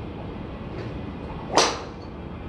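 A golf practice swing: a thin, flexible club shaft swishes through the air once, a short rising whoosh about one and a half seconds in.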